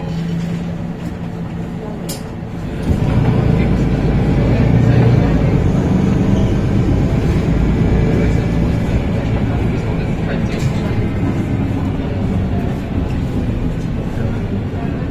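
Interior sound of a MAN NL323F bus, its MAN D2066 inline-six diesel engine: a steady low hum at first, then about three seconds in the engine note grows abruptly louder and stays up as the bus pulls away and drives on under power.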